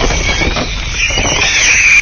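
Sound effects of an animated outro: the low rumble of an explosion dying away, with a high wavering screech that rises and falls over it in the second half.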